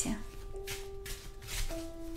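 A deck of playing cards shuffled by hand, a few short papery swishes of the cards, over soft background music with long held notes.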